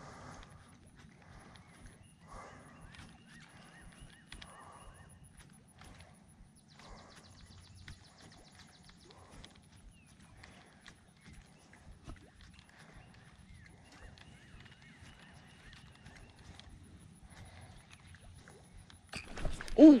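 Quiet pond-bank ambience with a baitcasting reel being cranked and light ticks as a topwater walking bait is worked back, and faint intermittent calls in the distance. Near the end a sudden loud burst as a bass strikes the lure.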